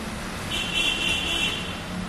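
A distant vehicle horn sounds for about a second, a high, buzzy tone, over a steady low hum of street traffic.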